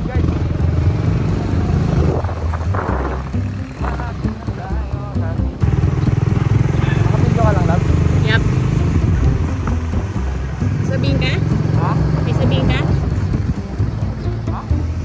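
Single-cylinder Suzuki Raider 150 FI motorcycle running as it is ridden at low speed, a steady low rumble that steps up in loudness about halfway through. Short voice-like snatches sound over it in the second half.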